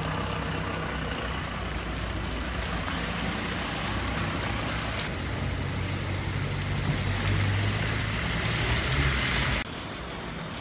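Farm tractor's diesel engine running steadily, growing louder about seven seconds in, then cut off abruptly near the end.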